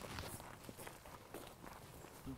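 Faint, irregular footsteps of people walking on a gravel track.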